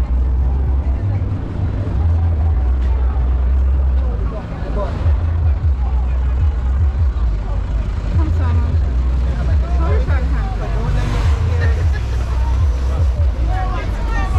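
Street ambience by a busy road: a continuous low rumble of traffic, with voices of people chatting nearby from about four seconds in.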